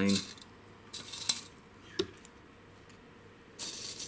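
Small metal coins and jewellery clinking as they are handled, with a few light clicks and then a longer jingling rattle near the end.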